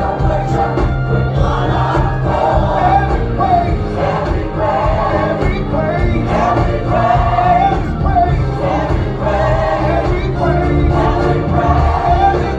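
Gospel worship music: a group of voices singing together over a steady low instrumental accompaniment.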